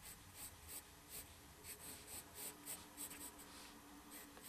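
Pencil drawing on paper, faint: short scratching strokes, about two or three a second, as lines are sketched.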